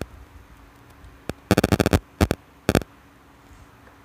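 Sharp plastic-and-metal clicks of patch-lead plugs being handled and pushed into the sockets of a power electronics trainer board. There is a single click, then a quick rattling run of clicks about a second and a half in, then two more short clicks.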